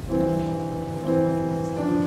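Keyboard starting a slow instrumental introduction with sustained chords, which change about a second in and again near the end.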